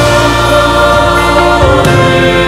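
Church choir singing in sustained chords, the harmony changing about a second and a half in.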